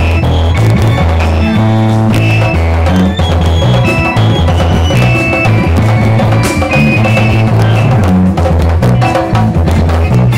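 Congolese soukous dance band playing: a drum kit keeps a driving beat under a deep, moving bass line and high electric guitar lines.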